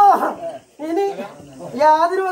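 Wordless vocal calls from a Mooken Chathan ritual performer, who plays a mute character: three short pitched cries, near the start, about a second in and near the end.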